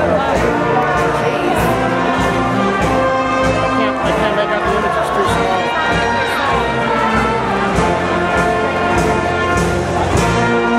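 Orchestral processional music led by brass, playing steadily with sustained notes, over crowd murmur.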